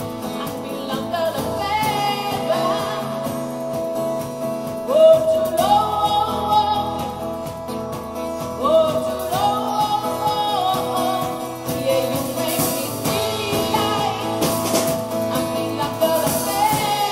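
A woman singing a rock-pop song into a microphone over band accompaniment with guitar, in sustained, gliding phrases that grow louder about five and nine seconds in.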